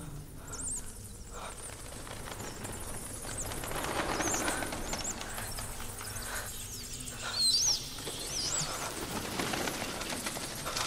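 A swarm of bats squeaking, with a rush of flapping wings, in a cave: many short high chirps that glide up and down, thickest about four seconds in and again near eight seconds, over a low steady drone.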